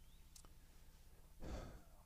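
Near silence over a faint steady low hum, with one soft breath taken close to the microphone about one and a half seconds in.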